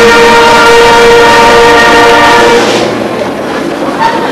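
Brass band holding a loud sustained chord at the end of the music, cutting off about two and a half seconds in, leaving the hum and rustle of the hall.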